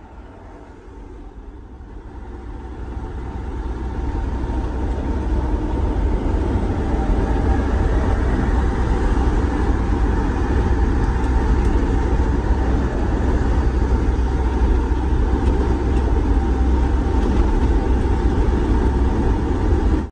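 Driving noise heard from inside a vehicle on a highway: a steady low engine and road rumble that grows louder over the first few seconds, then holds steady.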